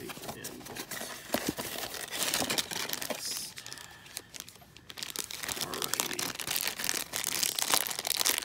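Crinkling and tearing of a Mystery Minis blind-box package being opened by hand: a black foil bag and its packaging handled. The sound eases off about four seconds in, then the crinkling turns dense for the last three seconds.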